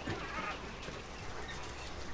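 Faint background sound of young coturnix quail in a wire cage, with a single soft peep about halfway through.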